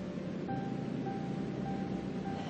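Soft background music with long held notes, over a steady noise of surf and wind.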